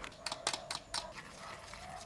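A metal fork clicking against a plastic bowl as an egg is beaten: a quick run of about half a dozen sharp taps in the first second, then quieter.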